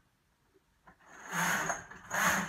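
Knitting machine carriage pushed across the metal needle bed, knitting a row: a sliding, rattling run starting about a second in and lasting about a second, with the return pass for the second row starting at the very end.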